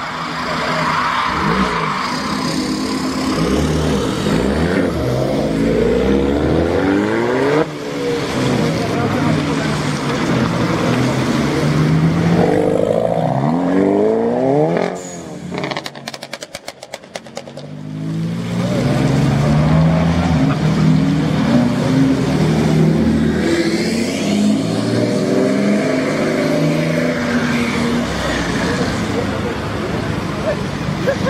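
Tuned cars pulling away one after another: a lowered BMW 3 Series saloon, then Volkswagen Golf GTI hatchbacks, their engines revving up in rising pitch and dropping back between gears, pull after pull. There is a short lull with a rapid run of crackles about halfway through, and voices can be heard over the engines.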